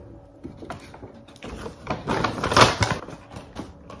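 Plastic shopping bag and paper rustling and crinkling as they are handled, in irregular bursts that are loudest between two and three seconds in.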